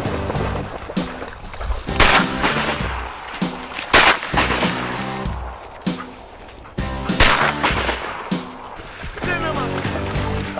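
Three shotgun blasts from waterfowl hunters, about 2, 4 and 7 seconds in, each with a short echo, over background music.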